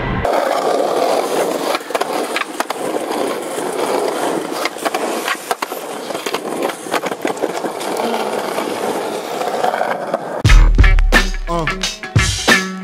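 Skateboard rolling over paving stones, its wheels making a steady rolling noise with scattered clicks as they cross the seams. Near the end, loud music with a deep bass comes in.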